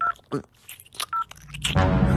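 Smartphone keypad touch-tones as a number is dialled: two short dial-tone beeps about a second apart. A louder low sound swells in near the end.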